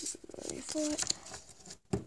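Foil Pokémon booster pack wrapper crinkling and crackling as it is handled and opened, a quick run of small crackles.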